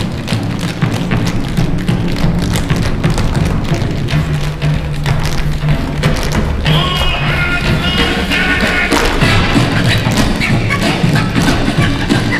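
Recorded music with a steady bass line, a higher melody coming in about halfway, over which a group of tap dancers' shoes strike the stage floor in rhythm.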